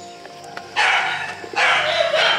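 Two strokes of a hand bicycle pump, each a loud hiss of about half a second, close together in the second half, over background music.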